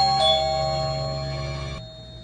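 Doorbell chime: a falling two-note ding-dong, both notes ringing out and fading, over background music that cuts off near the end.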